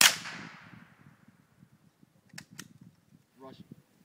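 .22 long rifle rifle firing a single shot, a sharp crack with an echoing tail that dies away over about a second. Two short clicks follow about two and a half seconds in.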